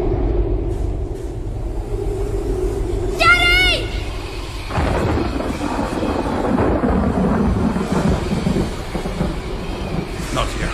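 Thunder rumbling low, then a sudden louder crack about five seconds in that rolls on for several seconds. A short high-pitched voice cries out about three seconds in.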